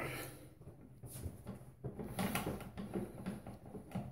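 Faint, soft, irregular sounds of a boar-bristle shaving brush working lather.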